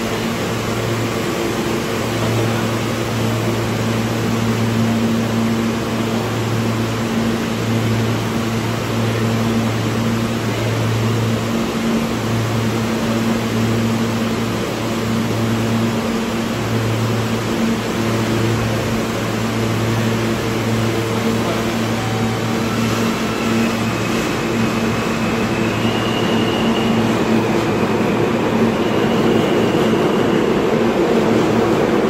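R160 New York City subway train standing at the platform, its onboard equipment giving a steady hum. Near the end it starts to pull out and its rumble grows louder.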